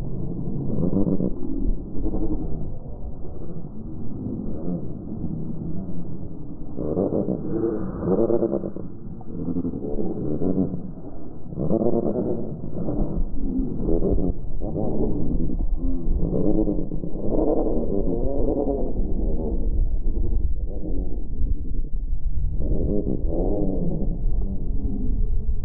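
Black-headed gull calls slowed to a tenth of normal speed, so they come out as deep, drawn-out, wavering calls, one after another. A steady low rumble runs underneath.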